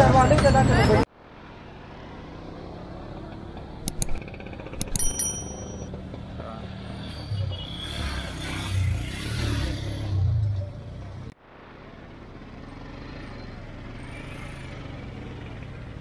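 Busy street traffic: a steady hum of motor rickshaws and cars with people's voices. It opens with about a second of loud music and voice that cuts off suddenly. A few thin metallic rings come about four to five seconds in, and louder voices or engines rise and fall between about seven and eleven seconds.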